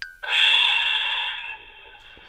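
A person's long exhale, a sigh that starts about a quarter second in and fades away over about a second and a half.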